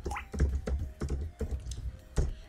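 Computer keyboard being typed on: a run of separate keystrokes, a few tenths of a second apart, finishing a short terminal command and pressing Enter.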